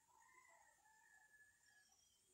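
Near silence, with one faint, long rooster crow lasting about a second and a half.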